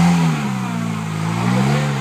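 Off-road 4x4's engine revving, its pitch easing about a second in and rising again before dropping near the end.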